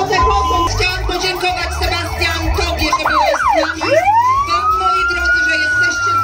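Several fire engine sirens sound together in rapid up-and-down yelps, overlapping one another. About four seconds in, one switches to a long wail that rises and holds high. Background music with a low beat plays underneath.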